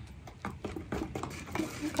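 An old, stiff paintbrush used as a stir stick, scraping and knocking around inside a paint can. It is stirring a thick, lumpy homemade gesso, and the strokes come as irregular clicks and scrapes several times a second.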